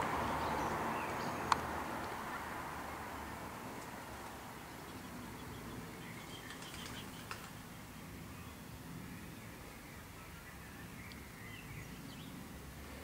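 Faint, shrill calls of common swifts around six to seven seconds in and again near the end, over a background hiss that fades over the first few seconds. A single sharp click about a second and a half in.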